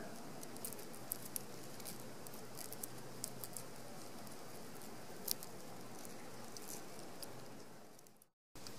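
Faint, irregular light ticking and rustling of fingers brushing purslane seed pods as tiny seeds patter onto a plastic lid, over a steady background hiss. The sound fades out near the end.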